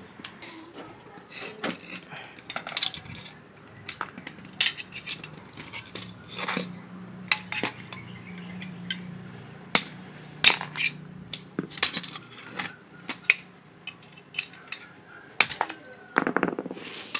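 Hammer tapping a nail against the rivets of a washing machine spin-dryer motor's pressed-steel end casing to knock them out: a series of irregular, sharp metallic taps and clinks.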